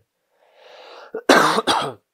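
A man draws a breath and then coughs twice, loudly, into his hand.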